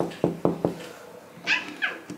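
A lever door handle being pressed and the latch clicking, about four quick clicks, as an interior door is opened. Near the end come two short high squeaks that fall in pitch.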